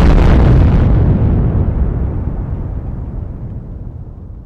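Explosion sound effect: a loud blast that rumbles and fades slowly, its rumble dying away over several seconds.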